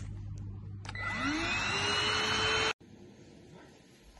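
V10 Pro cordless stick vacuum switched on: its motor spins up with a rising whine about a second in and settles into a loud, steady high-pitched run. It cuts off suddenly a little before the end.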